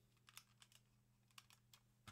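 Faint, irregular keystrokes on a computer keyboard, about ten light clicks, over a low steady hum.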